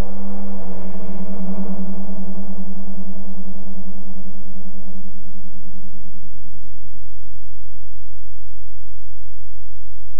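A low, gong-like ringing tone with a slight waver, dying away over about six seconds, over a steady low hum.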